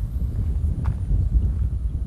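Strong wind buffeting the microphone: a heavy, uneven low rumble, with a couple of faint taps.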